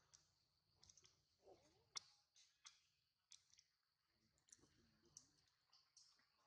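Near silence with faint, scattered clicks at irregular intervals over a faint steady high hiss.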